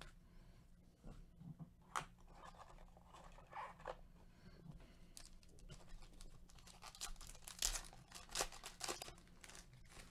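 Foil trading-card pack being torn open and its wrapper crinkling, heard as faint irregular crackles that grow denser in the second half.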